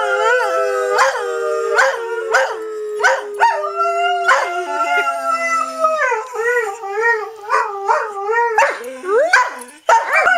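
Greyhound howling: a long, drawn-out howl that slides slowly down in pitch over the first four seconds or so, then breaks into a wavering, yodel-like run of short rising-and-falling howls, about three a second.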